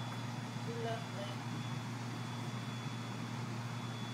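Steady hum of a stationary Tide light rail car's onboard equipment, with a thin high whine held over it.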